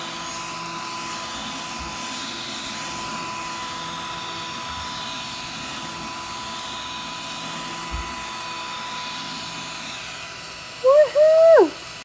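Small battery-powered desk vacuum running steadily as it is moved over a desk picking up glitter: an even suction hiss with a thin high whine. Near the end a brief, louder sliding pitched sound, like a voice, cuts in.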